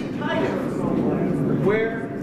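A man speaking.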